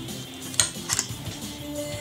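Soft background music with steady held notes. About half a second and again about a second in come two light clicks from a Spider Victor paintball marker being handled.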